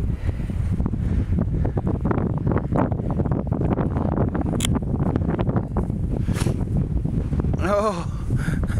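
Wind buffeting the camera microphone in a steady low rumble, with short scuffing noises throughout. A brief voice-like sound comes near the end.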